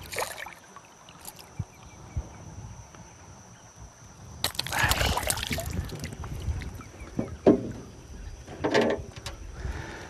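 Peacock bass splashing and thrashing at the water's surface as it is lifted from the river beside a boat, about halfway through. A couple of sharp knocks follow.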